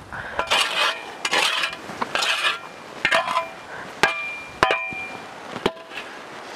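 A hand tool scraping against a metal wire-mesh sieve in four strokes, then three sharp metallic taps on it that ring briefly.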